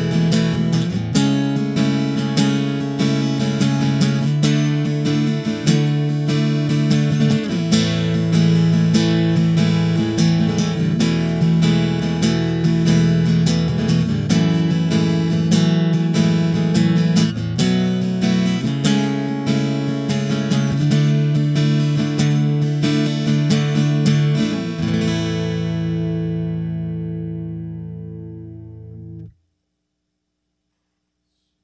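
Luna Fauna Hummingbird parlor-size cutaway acoustic-electric guitar played in chords through its onboard B-band preamp and an amplifier, the chords changing every second or two. About 25 seconds in, a final chord is left ringing and fades until the sound cuts off suddenly near the end.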